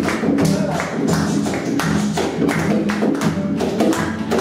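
An acoustic guitar strummed in a Latin rhythm, with a second acoustic guitar laid flat and drummed on its wooden body by hand as percussion, giving a quick run of sharp taps.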